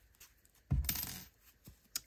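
A brief handling clatter about two-thirds of a second in, starting sharply and lasting about half a second, as hands work a tapestry needle and yarn through a crocheted piece; a small click follows near the end.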